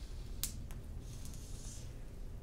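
A single sharp click about half a second in, then a fainter one, over low hum and a faint hiss.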